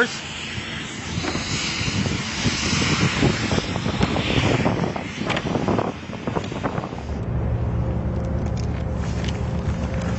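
A 2012 Bentley Continental GT's soft-closing door being swung toward shut, with rustling and light knocks. About seven seconds in, a steady low hum takes over.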